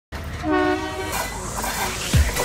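Indian Railways locomotive horn giving one short blast about half a second in, lasting about half a second, over the noise of the approaching train.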